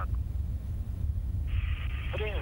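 Low, steady outdoor rumble on the launch-pad microphone during the countdown. About one and a half seconds in, a radio channel opens with a sudden band of hiss.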